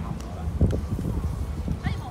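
Open-air background: an uneven low rumble with a few soft thumps, and people's voices briefly near the end.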